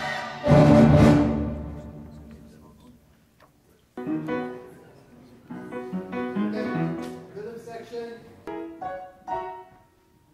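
Orchestral music with piano and strings: a loud full chord about half a second in that rings and dies away over about two seconds, then a melodic phrase of changing notes from about four seconds in.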